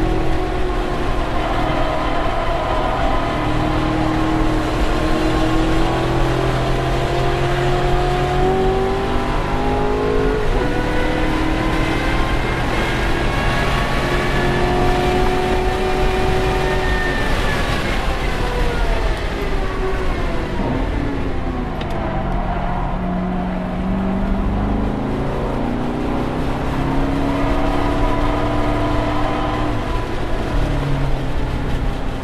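Chevrolet Corvette C7 Grand Sport's 6.2-litre V8, heard from inside the cabin at track pace. The engine pitch climbs under acceleration and drops sharply at an upshift about ten seconds in, then climbs again. It falls steadily for several seconds as the car slows for a corner, and rises once more near the end, over steady tyre and wind noise.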